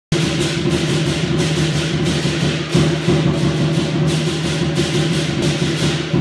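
Live lion dance percussion: a large Chinese drum beating steadily under continuous clashing cymbals, loud and unbroken.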